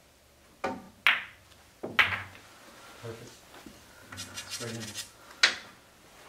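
Pool shot: the cue tip taps the cue ball about half a second in, then sharp clicks of billiard balls striking each other come about a second in, with more knocks from the balls hitting the cushions and pocket after that. Another loud sharp click comes near the end.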